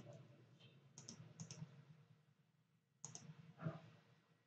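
Faint clicks of a computer mouse over near-silent room tone, a few short clicks, some in quick pairs.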